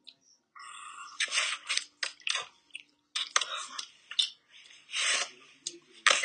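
Close-up chewing and crunching of a strawberry-chocolate candy, a string of short crunchy bites and chews.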